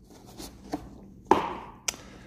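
Molded-pulp egg carton with beads inside, handled on a wooden table: a faint click, then a soft knock about a second and a quarter in and a sharp click near the end.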